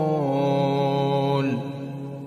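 A male voice chanting Quran recitation in melodic tajweed style, holding the long final vowel of a phrase on a steady note. The note dips slightly just after the start and fades out about three-quarters of the way through.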